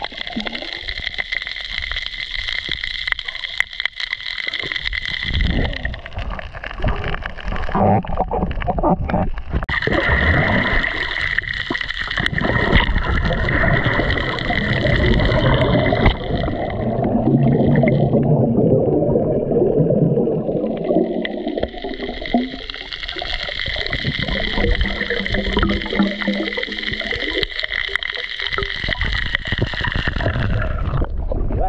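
Water noise picked up by a camera in a waterproof housing on a night spearfishing dive: muffled gurgling and sloshing, with a steady high whine through much of it. The whine fades for a few seconds in the middle, where the lower gurgling grows loudest.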